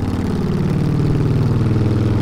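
Harley-Davidson cruiser motorcycle engine running at a steady, even pitch under the rider.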